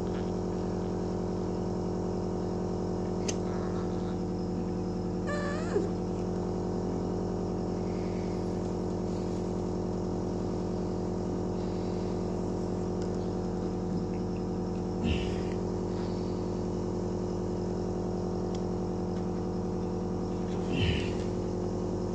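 A steady, even hum throughout, like an electrical appliance or motor running, broken by a few brief knocks and a short wavering squeak about five and a half seconds in.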